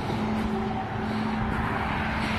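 Steady road traffic noise from cars driving along the road beside the sidewalk, with a faint low engine hum.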